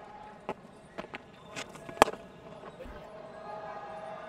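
Cricket stadium ambience between commentary lines, with a few scattered claps and one loud, sharp knock about two seconds in.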